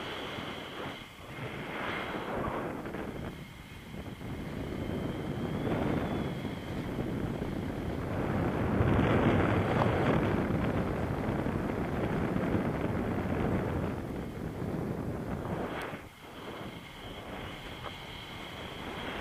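Wind rushing over the microphone in flight on a tandem paraglider, swelling and fading, loudest about nine seconds in.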